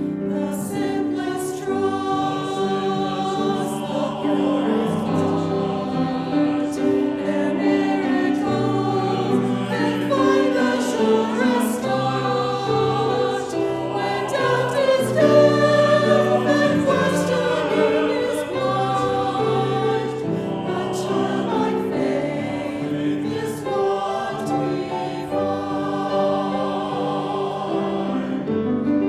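Small mixed choir of women's and men's voices singing a sacred song together.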